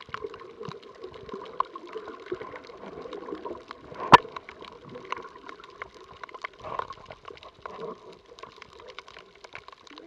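Water heard from underwater: a steady muffled rush with scattered sharp clicks and crackles, one loud click about four seconds in.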